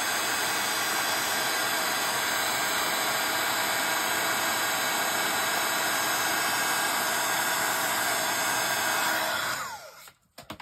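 Handheld craft heat gun blowing steadily while heat-setting a stamped image on card. It is switched off about nine and a half seconds in and its fan winds down with a falling whine.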